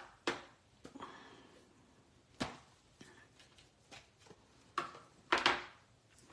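Paper and cardstock being handled on a craft mat: several short taps and rustles, the loudest two about five seconds in.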